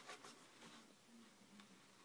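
Near silence: room tone, with a few faint ticks just after the start.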